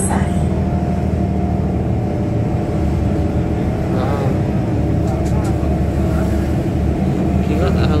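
Steady low engine and road drone inside the cabin of a moving city bus, with a faint steady whine above it.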